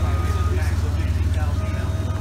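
Forklift engine idling: a steady low drone with an even pulse. Faint voices can be heard over it.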